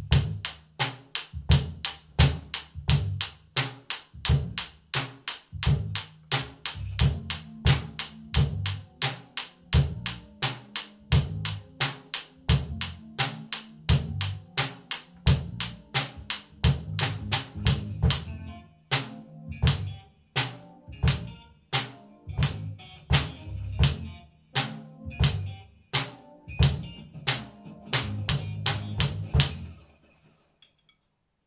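Acoustic drum kit played in a steady groove of bass drum, snare and hi-hat strokes. About eighteen seconds in the high cymbal sizzle drops away for a moment before the groove comes back, and the playing stops near the end.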